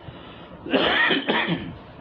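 A man coughs twice in quick succession, about a second in.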